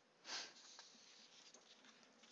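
Near silence, with one short sniff, a quick breath in through the nose, a little after the start.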